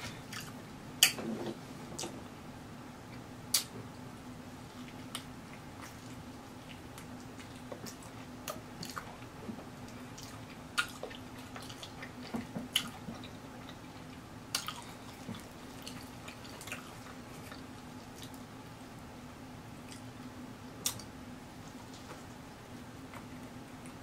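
Close-miked chewing of a Hot Cheetos-crusted fried turkey leg in cheese sauce: wet mouth smacks and sharp clicks at irregular intervals, with a faint steady hum underneath.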